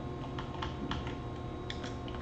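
Typing on a computer keyboard: a handful of separate, irregularly spaced keystrokes.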